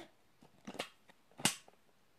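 A few short, soft rustles and clicks of quilted fabric being handled, the sharpest about one and a half seconds in.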